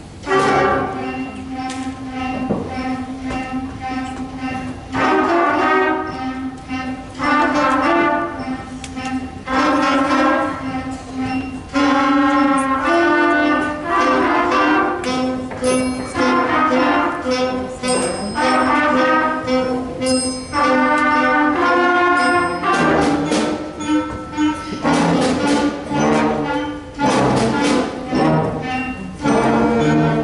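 Middle school concert band of woodwinds and brass starting a piece with a sudden loud entrance, then playing on in shifting phrases over a held low note, in a large, echoing hall.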